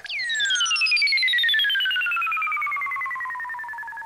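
Cartoon sound effect: a long descending whistle that slides steadily from a high pitch down to a much lower one over about four seconds with a rapid flutter, fading slightly at the end. It is the stock effect for a character sent flying far away.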